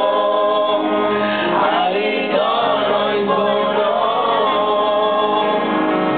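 Live pop-rock band playing a song: male voices singing together over electric guitar, bass and drums.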